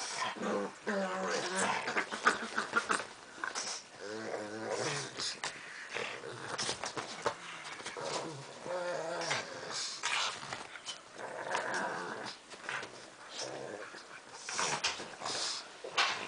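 Two pugs growling in bouts as they tug and wrestle over a plush toy.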